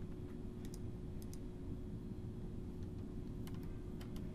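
A few scattered clicks from a computer mouse and keyboard, a pair about a second in and another near the end, over a steady low electrical hum with a faint steady tone.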